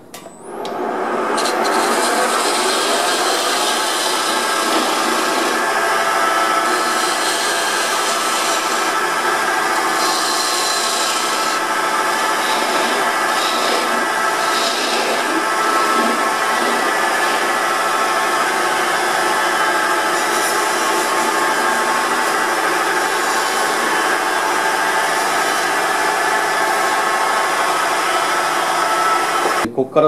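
Wood lathe spinning a wooden cylinder while a turning tool cuts into its end, trimming off the gripping tenon. It comes up to speed about a second in, the tool scrapes and cuts steadily, and it stops suddenly just before the end.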